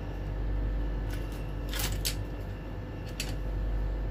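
A few short scrapes and clicks of wire and small tools being handled on a workbench, the loudest a pair near the middle, over a steady low background hum.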